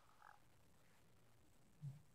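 Near silence: faint room tone with a couple of soft short sounds at the start and one brief low blip near the end.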